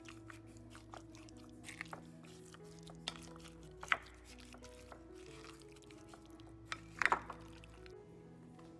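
Background music with held melodic notes, over a spoon stirring chicken in a glass bowl: soft scraping and a few sharp clinks on the glass, the loudest about seven seconds in.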